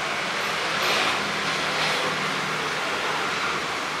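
Street traffic noise: cars and motor scooters passing on a busy road, a steady hiss with gentle swells as vehicles go by.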